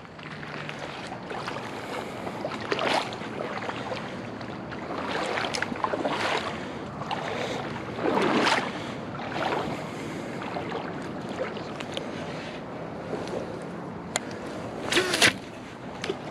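Wind on the microphone and water lapping at the lakeshore, with a few short knocks and rustles of handling, the sharpest one near the end.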